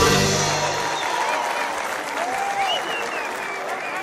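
A band's last chord dies away in the first second. An audience then applauds with a few cheers, and the sound fades out near the end.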